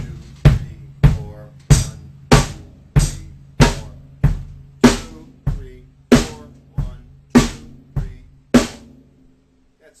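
Drum kit playing a basic rock backbeat: bass drum on one and three alternating with snare drum on two and four, single evenly spaced strokes at about a beat and a half a second, stopping about nine seconds in.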